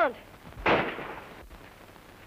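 A single gunshot about two-thirds of a second in, dying away over about half a second, on an early-1930s film soundtrack.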